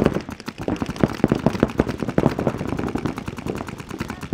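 Paintball markers firing rapid strings of shots, the sharp pops coming thick and overlapping in quick, irregular succession.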